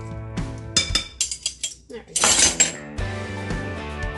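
Metal kitchen utensils clinking against a mixing bowl: a few quick clinks, then a louder rattling clatter about two seconds in. Background music plays before and after.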